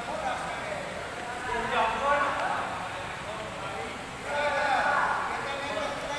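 Indistinct voices calling out in an echoing sports hall, in two bursts, about two seconds in and again from about four seconds in.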